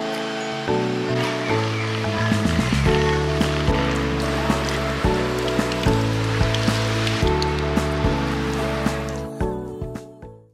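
Background music with a steady beat, over hot-spring water running from a spout onto hands at a hand bath. The music fades out near the end.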